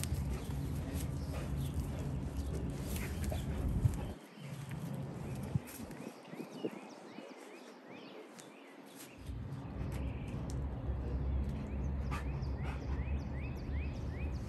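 Low rumble of wind or handling on the phone microphone, with a dog scuffing and pawing about in dry dirt. Quick runs of small falling bird chirps come twice, around the middle and near the end.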